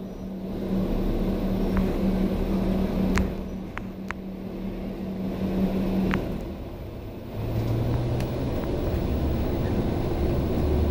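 A MAN A91 bus's MAN D2066 six-cylinder diesel and Voith DIWA automatic gearbox, heard from inside the cabin. The drivetrain runs with a steady hum that drops away about six seconds in, then picks up again at a lower pitch. Light rattles and ticks come from the bus body now and then.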